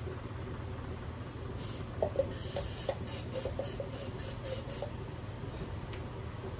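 Aerosol can of candle release spray hissing as it is sprayed into a candle mold: a short spray, then a longer one, then several quick short puffs.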